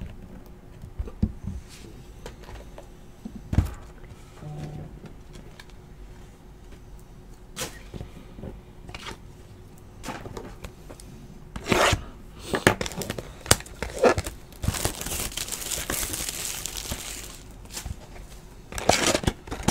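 Cards and a cardboard box handled on a table with scattered taps and knocks, then, from about two-thirds of the way in, the plastic wrap being torn and crumpled off a sealed hobby box of trading cards: a run of crinkly tearing that grows into a steady rustling hiss near the end.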